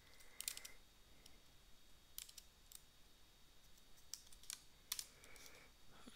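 Faint computer keyboard keystrokes: a few isolated clicks, spaced irregularly.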